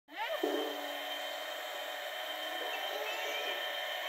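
A steady motor hum with several fixed pitches and a hiss over it, typical of a running pump. A short rising vocal sound comes at the very start.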